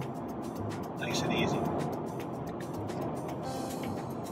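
In-cabin road and engine noise of a 2017 Honda Civic Hatchback Sport cruising on the highway, speeding up slightly as the cruise control is set higher toward 68 mph. The noise grows a little louder about a second in.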